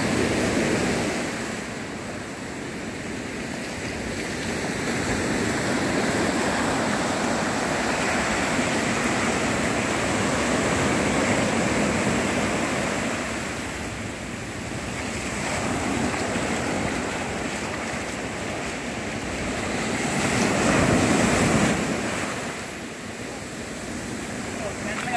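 Sea surf breaking and washing up a sandy shore, a continuous rushing noise that swells and eases with each wave. It is loudest a few seconds before the end.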